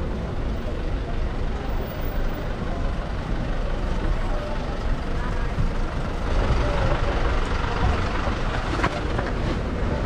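Street noise dominated by a steady low engine rumble from a box truck at the curb, with the hiss of the street growing a little louder about six seconds in.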